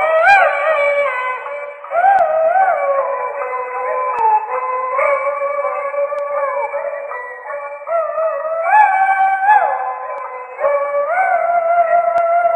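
Peking opera music from an old record: a high, ornamented melody of held notes that slide and waver, in phrases a few seconds long. It sounds thin and narrow, with no bass.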